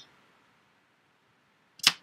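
Near silence for most of the stretch, broken near the end by one short, sharp burst of noise.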